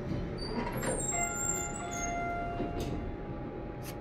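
Otis elevator arrival chime: a single electronic tone that sounds about a second in and rings steadily for about two seconds.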